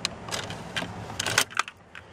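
Factory dash cassette deck of a 1997 GMC Sierra ejecting a tape. The eject button and the deck's mechanism make a series of sharp clicks and clunks over about a second and a half as the cassette is pushed out and taken.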